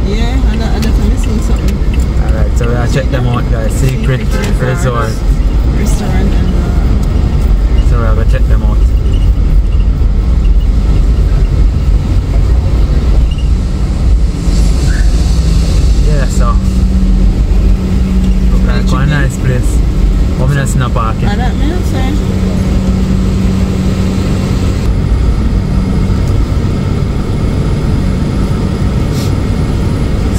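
Inside a moving car: a steady low rumble of engine and road noise, with snatches of talk from the occupants.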